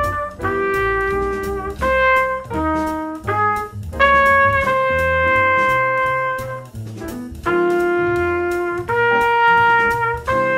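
Trumpet playing long tones: a series of held notes on the roots of a jazz tune's chord changes, each note lasting as long as its chord, some under a second and some about three seconds. A quieter play-along backing track sounds underneath.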